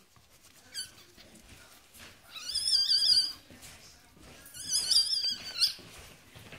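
Newborn Yorkshire terrier puppy crying in high, wavering squeals while being rubbed in a towel: a short squeak about a second in, then two cries of about a second each.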